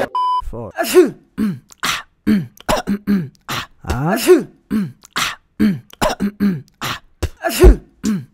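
A short test-tone beep, then a run of quick percussive vocal sounds about two a second, with short swooping pitched notes, hissy snare-like strokes and a few deep kick-like thumps: beatboxing.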